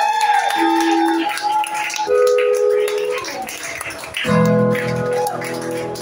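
Acoustic guitar chords ringing with a voice held over them, played live.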